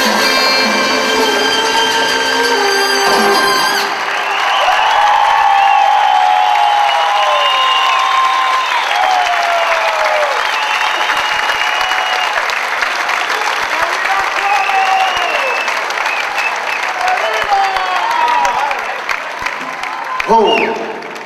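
A salsa band holds a final chord that stops abruptly about four seconds in, and the audience then breaks into loud applause and cheering, with shouts rising and falling through it.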